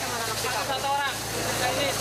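People's voices calling out over a steady low engine hum.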